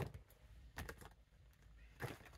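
A deck of tarot cards being shuffled in the hands: a few faint taps and flicks.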